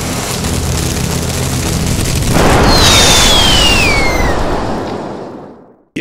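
Intro sound effect for an animated logo: a rushing swell that breaks into an explosion-like boom about two seconds in, with a whistle gliding downward, then fading away to silence.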